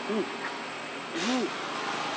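Two short calls, each rising and falling in pitch, one just after the start and a louder one a little over a second in, over a steady hiss of forest background.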